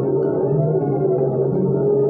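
Warr guitar improvisation played through effects: sustained, layered tones with a slow, repeating rise and fall in pitch among the upper notes.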